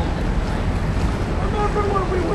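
Steady low rumble of wind buffeting the microphone outdoors, with people's voices talking in the background, plainest in the second half.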